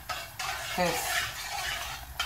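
A metal spoon stirring yeast into warm water in a metal pot, a wet swishing with the spoon scraping the pot: the yeast being dissolved so it activates.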